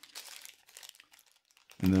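Clear plastic packing bag crinkling in the hands as it is handled, a quick, uneven run of small crackles that thins out after about a second and a half.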